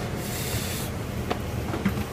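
Handling noise: clothing rubbing over the phone's microphone, a brushing hiss lasting under a second near the start, then a single click, over a low rumble.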